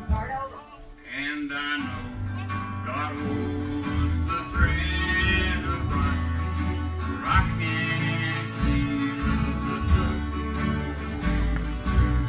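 Acoustic guitar strummed in a steady country rhythm, chords over a low bass line; the playing fills in about two seconds in.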